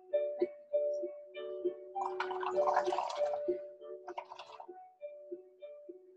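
Background music with held notes throughout. About two seconds in, a second and a half of bubbling as air is blown through a straw into a cup of soapy paint, with a shorter burst just past four seconds.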